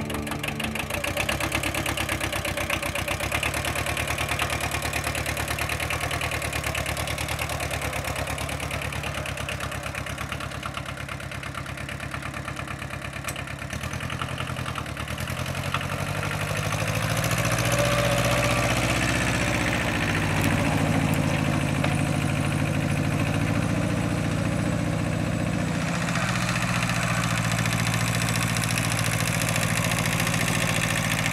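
Kubota L1501DT compact diesel tractor engine running steadily, its note rising and growing louder about halfway through as the tractor is driven off and comes closer.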